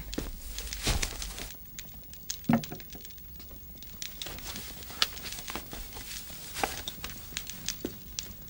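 Soft scattered footsteps and clothing rustle as people move about a room, with a soft thump about a second in and small clicks throughout.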